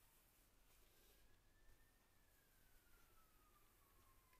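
Near silence: room tone, with a faint thin tone that rises briefly and then slowly falls in pitch.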